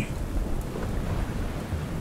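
Steady rain falling, with a low rumble of thunder underneath.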